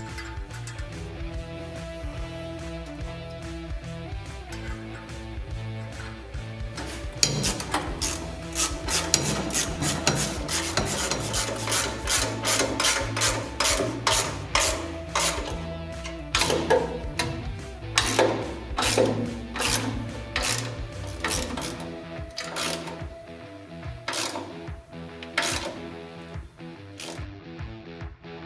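Background music, with a hand ratchet clicking in quick runs over it from about a quarter of the way in until near the end, as it tightens the mounting of an air tank.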